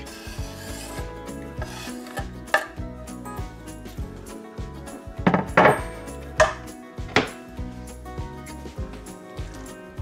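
Wooden cutting board scraped and knocked against a frying pan as diced peppers and onions are pushed off it into the pan, with a few sharp knocks, the loudest a quick cluster a little past the middle, over background music.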